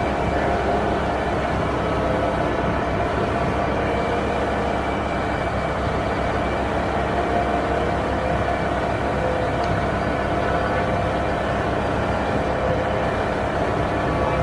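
Fendt 828 Vario tractor running steadily under load as it pulls a working muck spreader across a field, a constant low rumble with several steady held tones over it.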